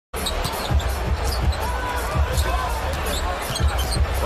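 Basketball being dribbled on a hardwood arena court, a low thud every half second or so, with short high squeaks of sneakers on the floor.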